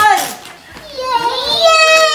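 Young children's excited, high-pitched voices. The level dips briefly about half a second in, then a long high call glides up and down through the second half.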